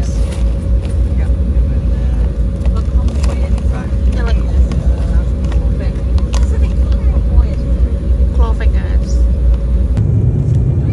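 Steady low rumble of an Embraer 190 airliner's cabin with a constant hum over it, and a crisp packet crinkling now and then as a hand reaches in.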